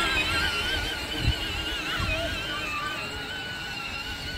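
Electric motors and gearbox of a John Deere Gator ride-on toy whining as it drives across grass, the pitch wobbling with the load. There are a couple of low bumps along the way, and the whine grows fainter as the toy moves off.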